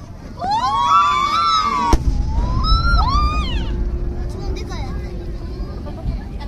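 A single firework shell's bang about two seconds in, trailing off in a low rumble. Spectators' voices cry out just before it and again just after.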